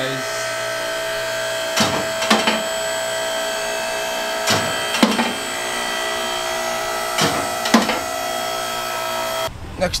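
Background music: sustained chords held steady under a sparse beat, with drum hits falling in pairs about half a second apart, every two and a half seconds or so.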